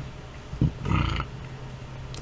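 A man's brief throaty vocal noise, not a word, about a second in, over a low steady room hum.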